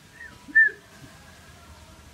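Hill myna giving two short whistles: a faint one, then a much louder one about half a second in.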